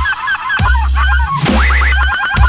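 Dubstep track built from chopped, rapidly repeated seagull calls over heavy sub-bass and drum hits, with a quick run of short rising calls near the end.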